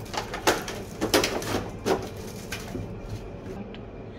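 Clear plastic packaging crinkling and rustling in several short bursts as it is handled, dying down near the end.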